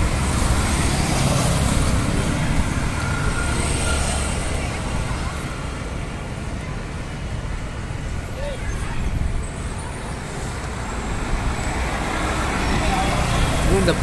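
Road traffic passing: a steady low rumble of vehicles that is louder at the start, dips in the middle, and builds again near the end.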